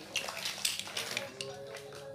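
Plastic toys and building blocks clattering and clicking as a child rummages through a pile of them, over faint music.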